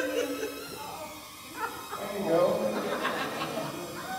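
Indistinct voices of people in a church sanctuary, talking and laughing. There is a lull about a second in, and the voices pick up again in the second half.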